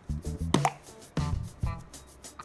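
Background music with a low, punchy beat and pitched notes.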